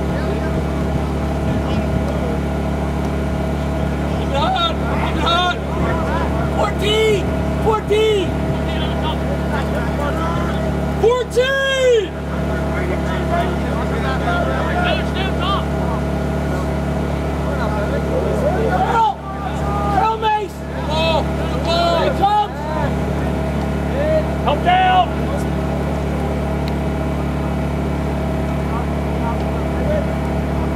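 Scattered shouts and calls from lacrosse players and coaches on the field, the loudest a little before the middle and several more in the second half, over a steady low hum.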